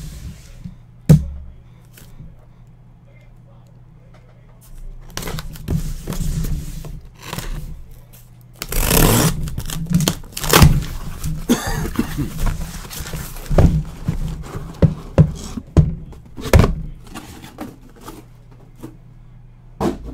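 A taped cardboard shipping case being opened and unpacked. There is a sharp thunk about a second in, a loud burst of ripping cardboard and tape past the middle, then knocks and scrapes as shrink-wrapped boxes are lifted out and stacked.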